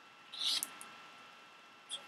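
A pebble is set down and slid across a paper counting board, giving a brief scratchy rustle about half a second in and a tiny click near the end.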